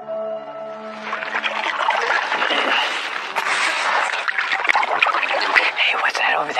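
Sustained music notes that end about a second and a half in, then loud, irregular splashing and swishing of water from canoe paddle strokes.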